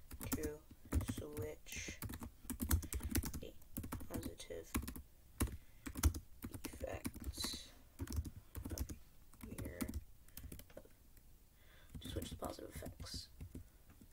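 Typing on a computer keyboard: irregular runs of quick keystrokes with short pauses between words.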